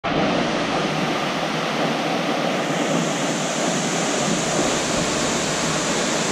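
Waterfall plunging into a rock pool: a steady rush of falling water.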